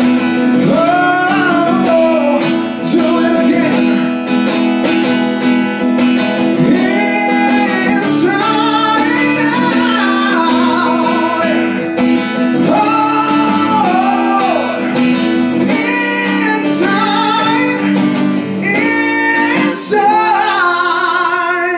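A live song: a singer holds long notes with vibrato over a strummed acoustic guitar.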